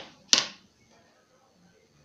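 A single short, sharp scraping swish on paper about a third of a second in, from the wooden ruler and pencil being worked on the pattern sheet.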